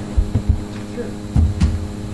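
Steady electrical mains hum through the room's microphone system, with four short low thuds of bumps picked up by the microphones, two near the start and two about a second and a half in.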